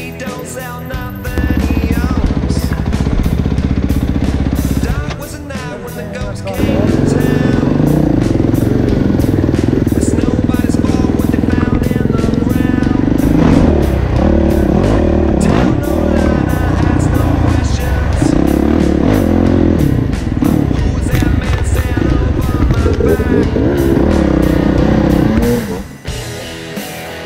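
Dirt bike engine running under way on a rough forest trail, its revs rising and falling as the throttle is worked, with a brief easing off about five seconds in.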